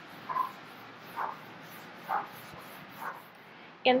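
Four faint, short animal calls about a second apart.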